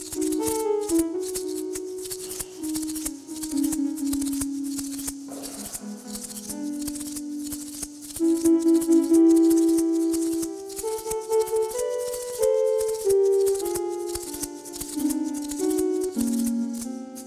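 Improvised duet: a Striso digital button instrument plays held synthesized notes that step up and down in a slow wandering melody, over a hand shaker rattling in fast continuous strokes. The notes swell loudest about halfway through.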